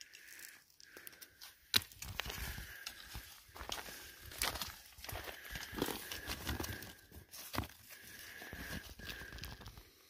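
Loose rocks and gravel shifting, scraping and crunching as a gloved hand picks through rubble and brush for rock samples. Two sharp clicks of rock knocking on rock come about two seconds in and again past the middle.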